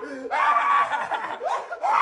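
A man shrieking and laughing in playful terror: one long high-pitched shriek, then another starting near the end.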